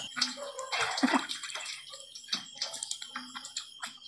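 Water splashing and dripping into a steel basin as hands scoop it onto a face and rinse it, in irregular splashes with the loudest about a second in.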